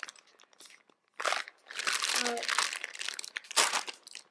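Thin clear plastic bag crinkling and rustling in bursts as hands pull it open, starting about a second in.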